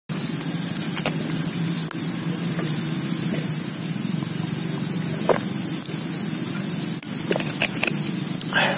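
A steady outdoor background drone, with a few brief soft clicks as a man drinks water from a plastic bottle.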